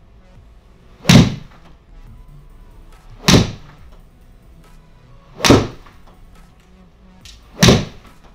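Four iron shots in quick succession, about two seconds apart: each a sharp crack of a TaylorMade P790 iron striking the golf ball, fired into a simulator screen.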